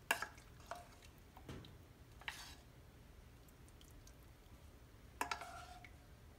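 Faint, scattered clinks of a metal spoon on a saucepan and glass baking dish, with soft wet squishes, as canned peach slices are scooped and laid into the dish. A slightly louder clink with a brief ring comes about five seconds in.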